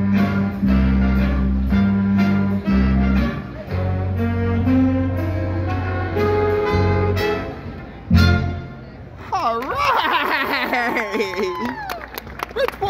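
Live jazz band of saxophones, trumpets and trombones playing over strong bass notes, closing on a loud final hit about eight seconds in. The crowd then cheers and calls out to the end.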